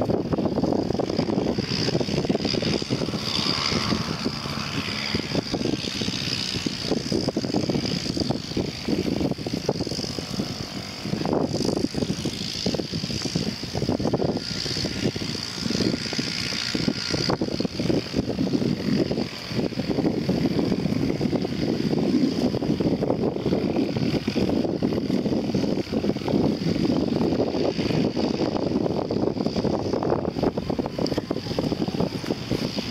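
Wind buffeting the microphone in uneven gusts, with a thin steady high hiss above it.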